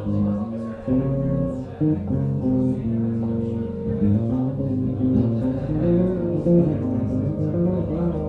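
Solo six-string Zon electric bass playing a piece built from layers: sustained low notes held under a moving line of plucked notes that change every half second or so, the underlying layers repeated by a looper pedal.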